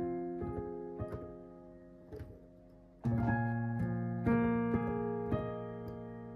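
Piano chords played slowly on a keyboard, stepping through a circle-of-fifths progression. A chord rings and fades for about three seconds, then a new chord is struck about three seconds in, with further changes after it.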